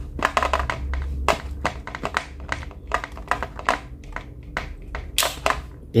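Plug-in analog timer relay (TDR) being worked loose and pulled out of its socket: a run of irregular plastic clicks and scrapes, loudest a little after five seconds in.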